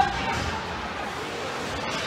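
Steady background noise of a small crowd in an ice rink, with faint voices from the stands and no single event standing out.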